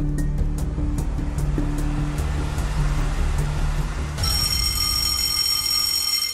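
Game-show countdown timer music: a pulsing bass pattern with regular ticks. About four seconds in, it gives way to a bright, sustained chiming tone that rings out as the countdown reaches its end.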